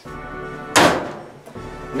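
A front-loading dryer's door slammed shut once, a sharp loud bang just before a second in, over steady background music.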